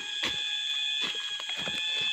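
A steady high-pitched whine, like an alarm tone, with fainter steady tones beneath it, over scattered light taps and rustles.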